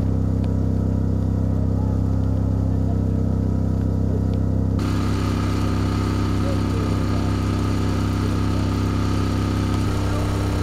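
Engine-driven generator powering the THAAD missile launcher system, running at a steady speed: a low, even engine drone. The hiss above it grows louder about five seconds in.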